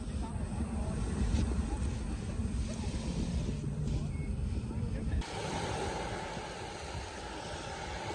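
Outdoor wind buffeting the microphone, a gusty rumble under a rushing hiss. About five seconds in it changes abruptly to a thinner, steadier hiss.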